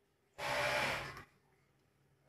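A single short breathy huff from a person, with no clear pitch, lasting under a second and starting about half a second in.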